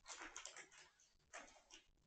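Two kittens play-fighting on a carpeted cat tree: faint, hissy scratching and scuffling noises in two short bursts, the first lasting most of the first second and the second shorter, about halfway through.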